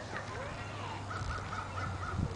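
A bird calling in the second half: a quick, even run of about five short notes at one pitch.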